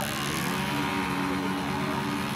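Motorcycle engine held at steady high revs during a tyre-smoking burnout, a sustained, even drone.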